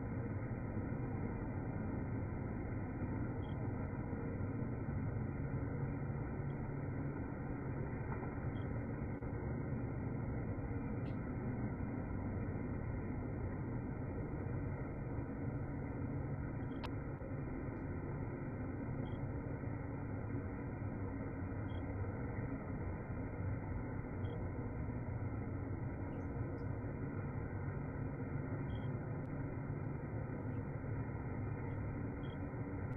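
Steady rushing, rumbling noise, even throughout, heard through a video call's narrow-band audio.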